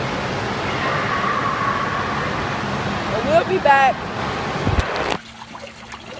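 Indoor waterpark din: a steady wash of rushing water and crowd noise, with a child's voice breaking through briefly about three seconds in. It cuts off suddenly about five seconds in to a much quieter background.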